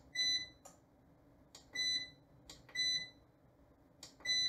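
Buttons on an EG4 3000EHV-48 inverter's control panel being pressed to scroll through its display. The inverter gives a short, high, clear beep with each press, just after a soft button click: three beeps about a second apart.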